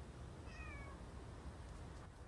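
A kitten gives one short, faint meow that falls in pitch, about half a second in.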